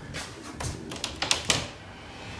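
A handful of sharp wooden clicks and knocks as the wooden panel of a fold-away wall bed is gripped and pulled open; the loudest knocks come about a second and a half in.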